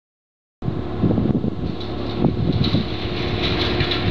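Wind buffeting the microphone, a rumbling noise that starts abruptly about half a second in and carries on unevenly.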